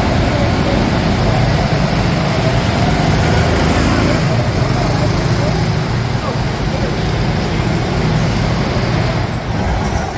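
Several go-karts running laps around an indoor kart track, a steady, loud motor noise that holds through the whole stretch.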